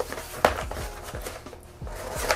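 A small cardboard package being handled as it is opened, with light rustling and a sharp click about half a second in.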